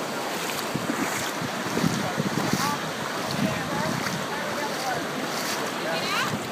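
Ocean surf washing in the shallows, with wind buffeting the microphone and water sloshing around legs wading through it.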